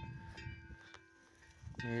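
Footsteps through dry grass, faint, with a faint steady ringing tone underneath; a man's voice starts again near the end.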